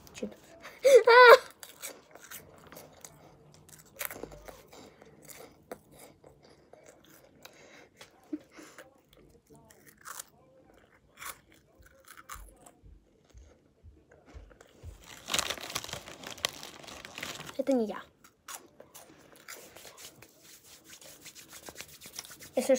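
Cheetos corn snacks being chewed close to the microphone: scattered small crunches and clicks. A short vocal sound comes about a second in, and a louder rustling stretch with a brief voice comes near the end.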